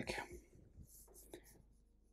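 A black felt-tip marker drawing a few short, faint strokes on paper.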